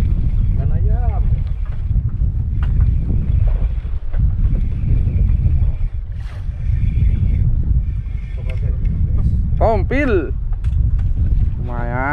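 Wind buffeting the microphone on an open boat at sea: a loud, steady low rumble. Short bursts of voice come about a second in and again near ten seconds.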